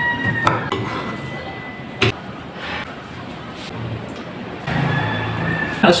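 Kitchen knife slicing calamansi on a wooden cutting board, then the pieces and a spoon going into a ceramic bowl: a few sharp knocks and clinks, the loudest about two seconds in, over a faint steady hum with a thin high tone.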